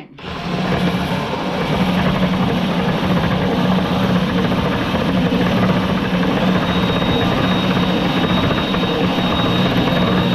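Cordless drill running steadily with a small steel bolt spinning in its chuck, its head being ground down against a hand-cranked grinding wheel: a steady motor hum under a grinding hiss. A thin high whine joins about six and a half seconds in.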